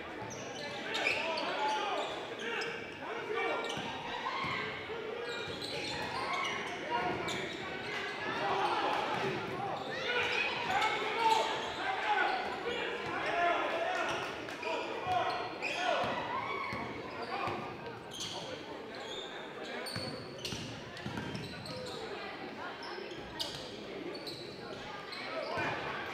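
Basketball being dribbled on a hardwood gym floor, short repeated bounces, under a running mix of players' and spectators' voices echoing through the gym.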